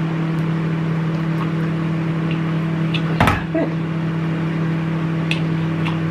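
Microwave oven running with a steady low hum. A short knock is heard about three seconds in.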